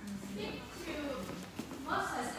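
Speech: a woman talking into a microphone.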